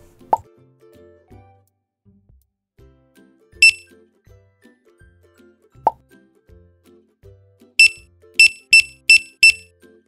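Checkout scanner beeps: a single short high beep, then a quick run of five beeps about a third of a second apart near the end. Soft children's background music plays under them, with two short rising plop sounds.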